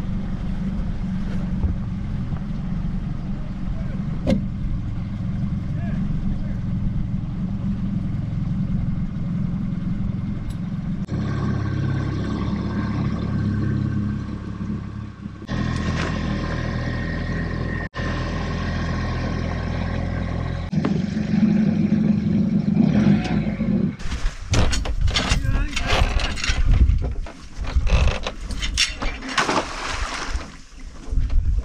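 Small outboard motor pushing a sailing trimaran along at a steady speed, its hum stitched together from several short clips. In the last six seconds it gives way to irregular gusts of wind on the microphone and knocks.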